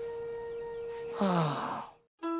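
Soft background score holding one steady note. A little past halfway comes a man's short sigh, falling in pitch, and then everything cuts out at the end.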